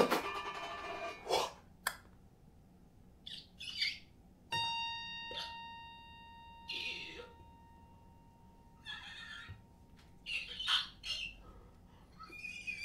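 Sparse experimental electroacoustic music of the musique concrète kind: a sharp hit at the start with a decaying tail, then short scattered noises between near-silent gaps. A steady high pitched tone comes in about four and a half seconds in and slowly fades over the next several seconds.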